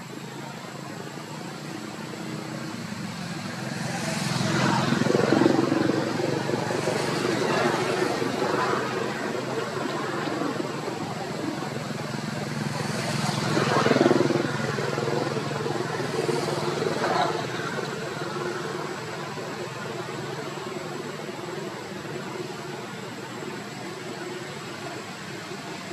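Motor vehicle engine running steadily, swelling louder twice, about five and fourteen seconds in, as traffic goes by.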